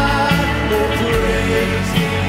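Live worship band playing a rock-style chorus with electric guitar, acoustic guitar and drums, and voices singing.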